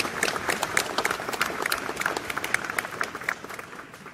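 Crowd applause in a medium-sized outdoor amphitheater: many hands clapping densely, thinning and fading over the last second or so.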